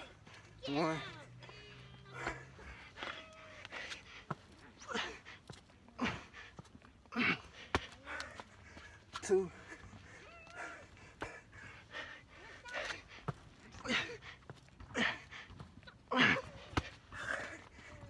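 A man breathing hard after a run of burpees, with loud, irregular gasps and exhales every one to two seconds.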